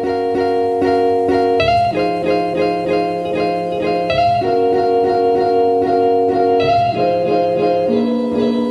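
Background music: a mellow instrumental with plucked guitar notes over sustained chords that change every couple of seconds.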